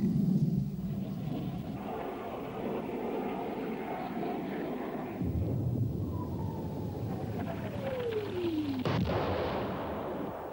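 Steady jet aircraft noise, with a whistle that falls in pitch over about three seconds, then a sharp blast about nine seconds in as a weapon hits the ground.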